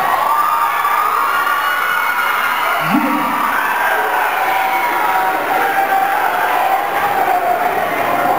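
Audience cheering and shouting, a steady din of many voices.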